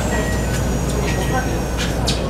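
Keikyu New 1000 series electric train running, heard from inside the car: a steady rumble with a thin high whine gliding slowly down in pitch.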